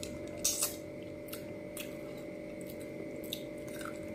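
Close-up mouth sounds of a person eating rice and fish curry by hand: wet chewing with sharp smacking clicks, two louder ones about half a second in and fainter ones scattered after. A steady faint hum runs underneath.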